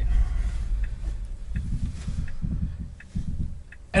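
Low road and tyre rumble inside the cabin of an electric Tesla Model 3 towing a travel trailer, with no engine sound, and a few faint light ticks; the rumble eases in the last second.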